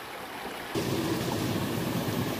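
Steady rush of a shallow rocky stream running over boulders, faint at first and then abruptly louder from just under a second in.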